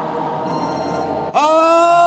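Voices chanting a drawn-out hymn line. After a quieter, murmuring gap, the singing comes back in about a second and a half in, sliding up onto a long held note.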